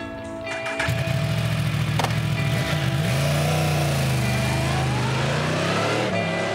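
A Yamaha R1 motorcycle engine starts abruptly about a second in and runs with a steady low note. Its pitch dips briefly about halfway through and then holds, over background music.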